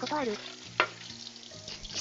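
Tteokbokki simmering in a lidded pan on the stove, a steady bubbling sizzle, with one sharp click a little under a second in.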